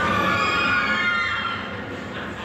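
A high soprano voice holding a wavering, vibrato note that slides down and fades about a second and a half in.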